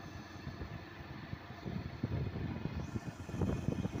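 Riding noise on a moving motorcycle: an uneven, gusty wind rumble on the microphone over engine and road noise. It grows louder about three seconds in.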